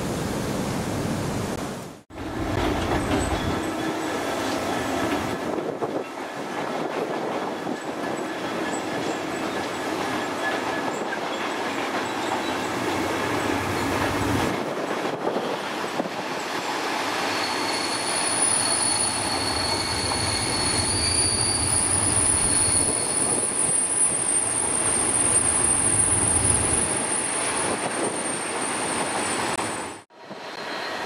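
Freight train of covered wagons rolling past with steady wheel and rail noise. A little past the middle a steady high wheel squeal joins in and holds to the end.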